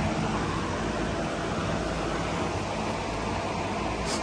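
Steady background noise: an even rush with a faint low hum underneath, with no distinct knocks or clicks.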